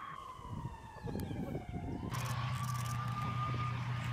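A tank's engine running with a high-pitched whine. The whine slides slowly down, then after a break comes back higher and holds nearly steady over a low, even engine hum.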